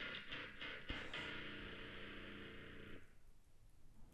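Music sample playing faintly from a laptop or speakers: a few short hits, then a held chord that stops about three seconds in.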